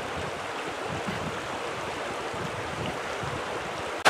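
River water running over shallow riffles: a steady, even rush.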